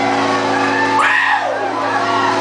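Live band music: a held, sustained chord, with one sliding note that rises and then swoops down about a second in.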